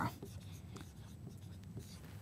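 Marker pen writing on a whiteboard: faint scratching strokes as letters are drawn.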